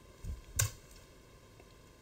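Near silence broken by one sharp click about half a second in, just after a soft low thump.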